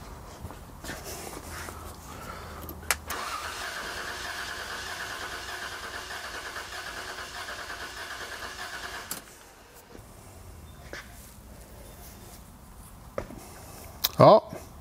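1998 Toyota 4Runner's 5VZ-FE 3.4 L V6 cranked over by the starter with the cylinder 4 spark plug removed, for a cooling-system pressure-pulse test for a leaking head gasket. A click about three seconds in, then about six seconds of steady, rapidly pulsing cranking that stops suddenly.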